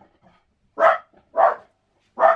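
A dog barking twice: two short barks about half a second apart.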